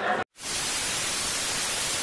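Television static sound effect: a steady, even hiss of white noise that starts suddenly after a brief drop to silence.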